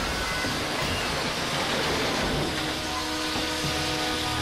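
Steam hissing in a steady rush as it vents from pipework, under a dramatic orchestral film score whose held notes come in about two and a half seconds in.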